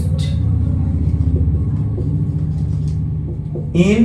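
A loud, steady low rumble with a hum in it, easing off slightly over the last second; a voice briefly starts near the end.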